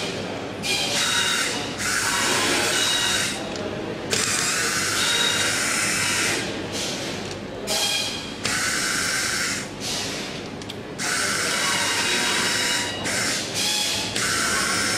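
Handheld electric screwdriver running in repeated short bursts, a high whine that starts and stops every second or two as it works the screws on the plastic back shell of an LED display module.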